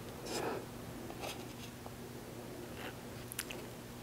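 Faint scraping of a table knife spreading chocolate frosting over pretzel sticks, one soft swish about half a second in and a few tiny clicks near the end, over a low steady hum.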